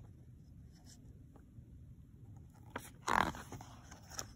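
A picture book's paper page being turned by hand: a few faint paper ticks, then one short swish of the page about three seconds in.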